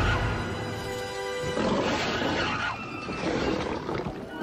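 Film soundtrack: a giant alien bug's monster roar over loud orchestral score.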